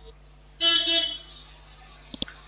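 A vehicle horn honks once, a steady pitched blare lasting about half a second.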